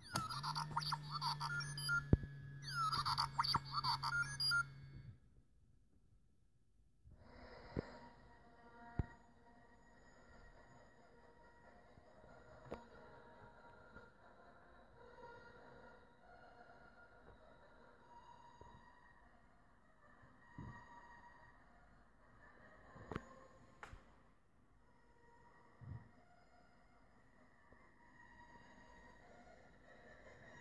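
R2-D2-style electronic beeps and warbling whistles from a hacked R2-D2 sweet dispenser, over a steady low hum, for about five seconds after its button is pressed. They stop, and after a short pause faint music plays quietly for the rest, with a few soft clicks.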